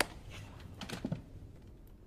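A few faint clicks, the first one sharp, over a low steady hum of room tone.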